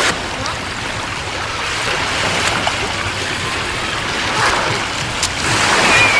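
Small waves washing in and running up a sandy beach at the water's edge, a steady rushing wash with a few faint clicks.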